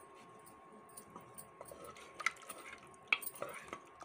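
A metal ladle stirring a watery curry in an aluminium pressure cooker: quiet at first, then about halfway in a string of clinks and scrapes as the ladle knocks against the pot's sides and bottom, with two sharper clinks the loudest.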